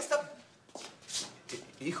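A short hush after a voice breaks off: faint shuffling and rustling, with a light click and a brief swish about a second in, before speech starts again near the end.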